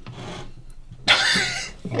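Orange double-cup suction lifter rubbing across a glass window panel, one short scraping rub starting about a second in. The cup is stuck fast to the glass.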